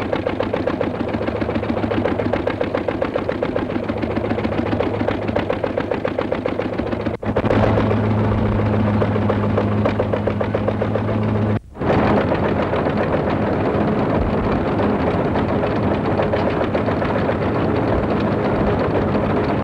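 Running machinery with a rapid, even clatter, broken by two brief dropouts about seven and eleven seconds in, with a steady hum underneath after the first break.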